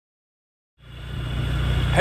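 Motorbike engine idling with a steady low hum, fading in from silence about a second in.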